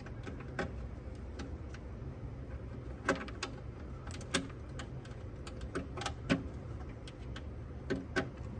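Scattered short clicks and light knocks of audio cable plugs being handled and reconnected at the back of a cassette deck, over a steady low hum.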